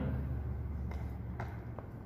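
Eating sounds at the table: three light clicks of cutlery or mouth in the second half, over a low steady hum.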